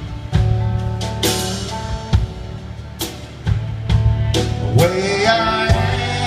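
Live country band playing an instrumental passage: acoustic and electric guitars, bass guitar, fiddle and a drum kit with regular cymbal and drum strikes. About five seconds in, a lead line slides upward in pitch.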